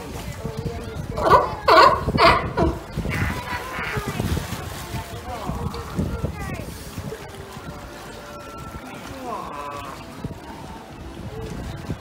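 Background crowd voices and music, with water sloshing in the pool; about a second in, three loud calls come half a second apart.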